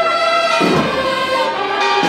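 Choral music: voices singing a hymn in held notes that move step by step.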